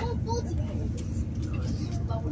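Steady low rumble of a passenger train running, heard from inside the carriage, with a couple of sharp clicks.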